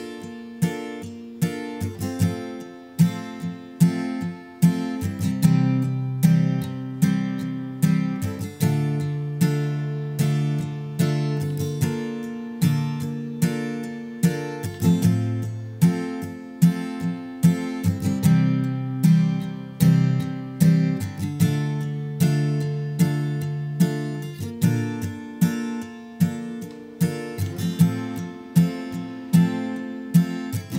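Acoustic guitar capoed at the 5th fret, strummed with a pick through the chords Fmaj7, C, G and A minor. Each chord gets a run of seven down strums that alternate between full and softer strokes, then a down-up, in a steady rhythm.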